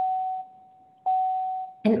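Electronic notification chime sounding twice at the same pitch, about a second apart, each note with a sharp start: a video-call tone marking a participant leaving the call after the goodbyes.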